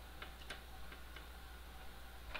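A few faint, irregular light clicks as fingers handle the plastic case and tuck in the board's flat Wi-Fi antenna, over a steady low hum.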